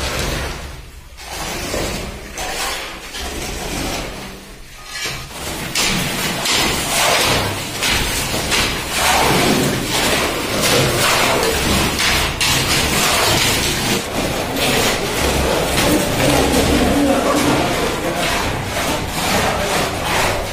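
Long-handled hoes and shovels scraping and pushing through wet concrete, separate strokes at first, then a dense, continuous run of scraping from about six seconds in as several workers spread it together.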